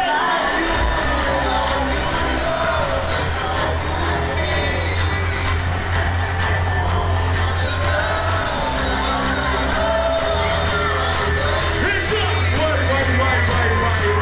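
Live hip-hop music played loud over a club PA, a heavy bass beat coming in about half a second in, with voices over it.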